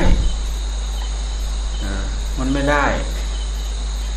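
Steady high-pitched insect chirring under a constant low hum.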